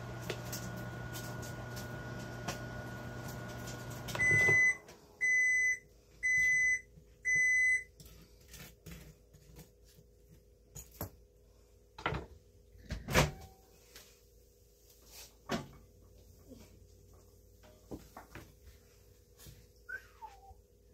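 Microwave oven running with a steady hum, which stops about four seconds in, followed by four loud beeps about a second apart marking the end of the heating cycle. A few scattered clicks and knocks follow.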